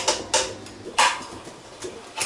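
Two sharp metal clanks with a brief ring, about a third of a second and a second in, and a lighter knock near the end, as the stainless-steel lid is seated into the top of a homebrew beer keg.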